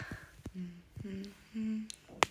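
A person humming three short notes, each a little higher than the last, with a few faint clicks near the start.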